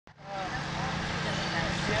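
Steady low hum of an idling vehicle engine, with people talking in the background.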